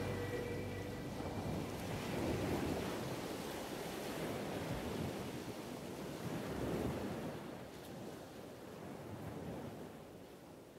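Sea waves washing in, swelling and ebbing every couple of seconds and fading out near the end, as the last held notes of the music die away in the first second.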